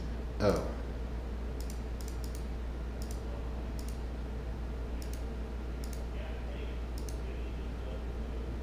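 Computer mouse clicks, about eight at irregular spacing, as options are picked from drop-down menus, over a steady low hum. About half a second in comes a short vocal sound falling in pitch, the loudest thing heard.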